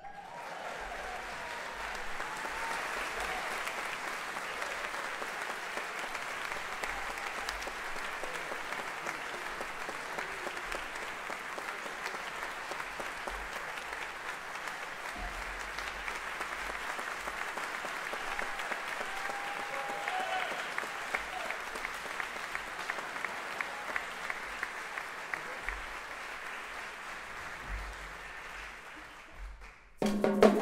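Audience applause filling a theatre, a steady clapping that dies away in the last second or two.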